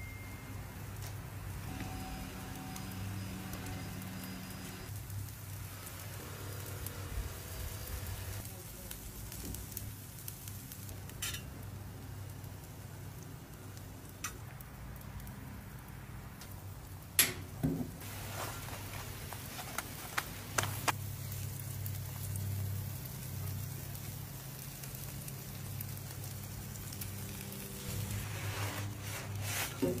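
Food sizzling quietly on a hot flat-top griddle, over a steady low hum, with a few sharp clicks, the loudest about seventeen seconds in.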